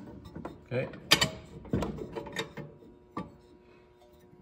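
Small cast-iron toy stove being handled: a few sharp metallic clicks and knocks as its parts are moved and its little oven door is swung open.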